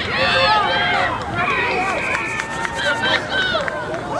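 Several voices shouting and calling over one another at a rugby game, none clearly understandable. A steady high tone lasts about a second in the middle.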